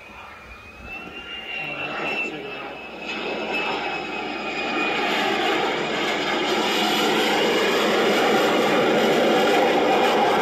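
F-35 fighter jet's engine noise building steadily louder as it comes in to land, with a thin high whine that wavers slightly in pitch over the first few seconds.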